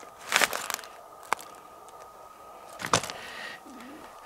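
Old dry railway-sleeper timber being handled: a short crunching rustle near the start, then two sharp wooden cracks about a second and a half apart, the second the louder.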